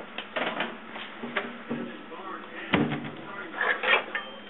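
Kitchen utensils clattering and knocking against a pot as soup is mixed, with one heavier knock about two-thirds of the way through.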